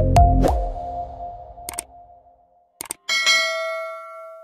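The last notes of an electronic logo-intro music sting fade out. Then come a few short clicks and a bright bell-like ding about three seconds in that rings on and decays: the sound effect of an animated subscribe button and notification bell.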